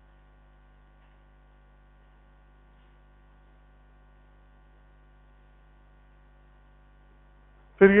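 Faint, steady electrical mains hum: a low drone with a ladder of higher overtones that does not change. A man's voice cuts in right at the end.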